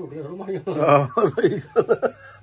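Speech and chuckling: a person talks, then laughs in a few quick short breaths in the second half.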